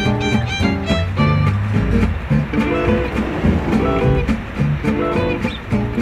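Background music of short, plucked string notes in a steady rhythm.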